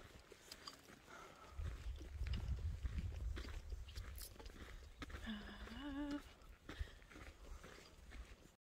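Footsteps on a dirt trail with scattered crunches and a low rumble on a handheld phone's microphone. A short hummed "mm-hm" from the hiker comes about five seconds in.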